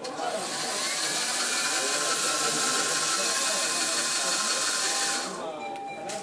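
Electric wheel motors of a homemade gesture-controlled robot cart running as it drives, a steady whirring whine that starts right away and stops about five seconds in.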